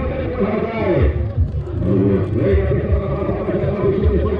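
A man's voice talking, the loudest sound throughout, over low background chatter.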